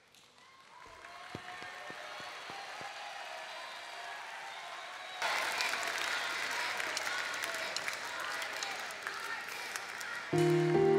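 Studio audience applauding, starting faintly and building, then jumping louder about halfway through.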